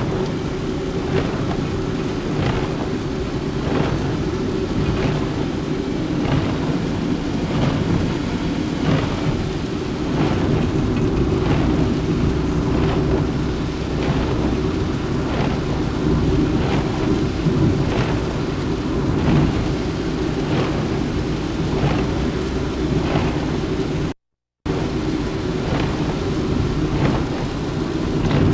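Steady low rumble of tyre, wind and engine noise inside a car's cabin as it drives on a wet road in rain, with rain hitting the windshield and the wipers sweeping. The sound drops out for a moment near the end.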